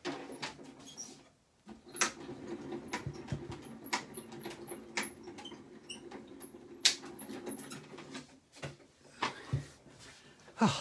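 Hand-cranked die-cutting machine rolling a die and its cutting plates through. There is a steady low grinding, a sharp click about once a second and small high squeaks, and it stops near the end.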